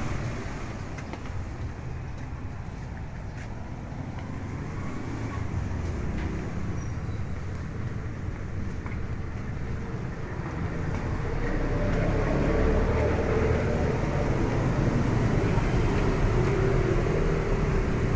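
Street traffic noise, a steady low rumble of motor vehicles. About two-thirds of the way through, an engine nearby grows louder and keeps running.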